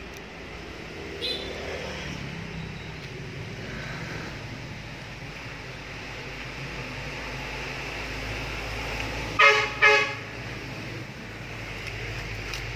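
Two short vehicle-horn toots about half a second apart, near the end, over a steady low background hum.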